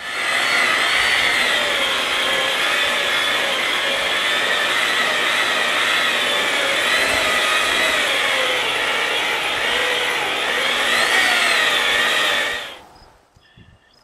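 Handheld electric polisher with a foam pad buffing the painted steel-and-aluminium-era motorcycle fuel tank with polish, its motor running steadily with a whine that wavers slightly in pitch as the pad bears on the paint; it stops suddenly near the end.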